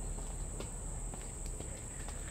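A steady high-pitched insect drone, with a few faint clicks from small plastic parts being handled.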